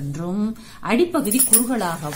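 A woman speaking, with a brief bright metallic jingle of bangles on her moving wrist about one and a half seconds in.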